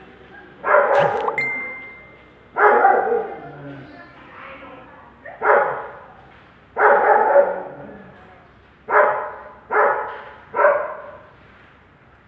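A dog barking: seven loud barks at irregular intervals, each trailing off in an echo.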